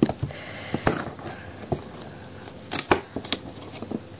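Fingers prying open a perforated cardboard advent-calendar door, making scattered sharp clicks and scrapes of cardboard.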